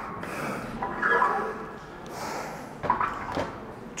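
A man breathing hard in heavy, noisy breaths, winded from a set of deep squats.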